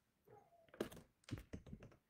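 Two quick clusters of sharp clicks and light knocks, one just under a second in and a longer one in the second half.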